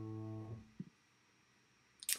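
The last held chord of a song on piano and bass guitar, dying away about half a second in.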